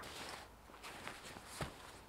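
Faint rustling and scuffing of a synthetic sleeping bag and groundsheet as a person shifts and crawls over them, with a short knock about one and a half seconds in.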